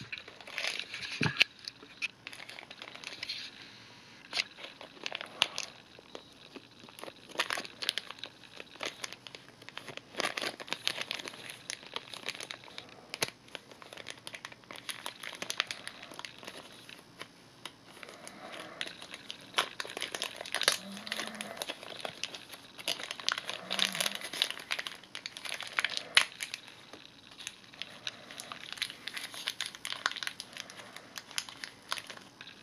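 Small clear plastic bag crinkling and crackling as fingers handle and open it, in irregular bursts.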